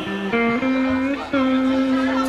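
Electronic keyboard of a dangdut organ setup playing a few steady held notes: a quick step up in pitch, a long note, a short break about a second in, then another long note at the same pitch.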